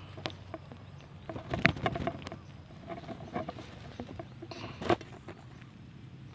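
Rustling and crackling of leaves and undergrowth as someone moves through dense vegetation: scattered crackles and small clicks, busiest in the first couple of seconds, with one sharp click about five seconds in.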